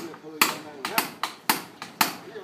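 A quick, uneven run of sharp knocks, several a second, with people's voices underneath.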